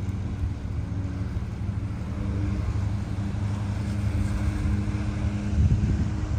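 A vehicle engine idling with a steady low hum, while wind buffets the microphone and gusts louder near the end.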